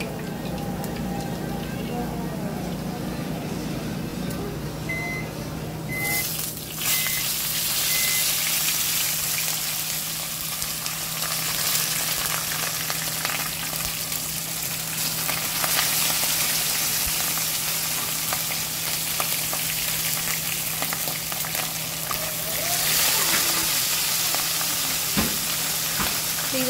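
Whole fish frying in vegetable oil in a pan: a loud, steady sizzle that starts suddenly about six seconds in and continues from there. Just before it, four short high beeps about a second apart sound over a low hum.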